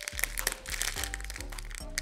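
Plastic wrapper of a biscuit roll pack crinkling and crackling in short, irregular bursts as it is twisted and picked at by hand, hard to open, over background music.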